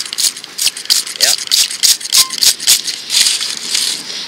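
Close, scratchy rustling and crunching of loose soil being handled, with a rough, rattling texture, as fingers work the dirt around a freshly dug coin. It comes as quick, irregular scrapes, several a second, with a longer hiss near the end.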